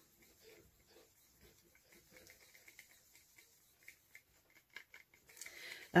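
Wooden craft stick stirring red acrylic pouring paint in a small cup to mix in drops of silicone: faint, irregular scraping and ticking of the stick against the cup.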